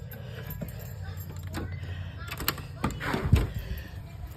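Rain falling outside, with a few short sharp ticks and knocks scattered through it over a steady low rumble.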